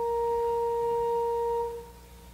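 A single steady musical note, a pure tone with few overtones, held and then fading out near the end.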